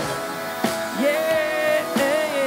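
A live band playing upbeat pop-rock, with an electric guitar and drums. A sharp drum hit lands about two-thirds of a second in, and a long wavering note comes in about a second in.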